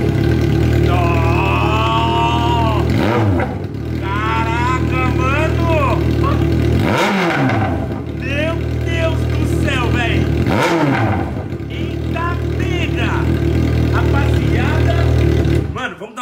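Yamaha XJ6 600 cc inline-four motorcycle engine running loud through its exhaust with the muffler baffle removed, leaving a bare 3-inch pipe. It idles and is revved up and back down every few seconds.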